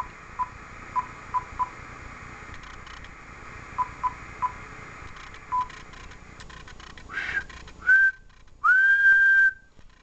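Short single-pitch key beeps from an Icom IC-7000 transceiver as a frequency is punched in on its keypad, about nine in the first six seconds. Near the end comes a short whistle and then a steady whistle held for about a second, whistled into the microphone in place of a tone generator to drive the radio's upper-sideband transmit output.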